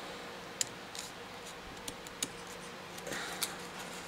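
Scissors snipping through a folded piece of thin white card, a handful of short, quiet snips at uneven intervals.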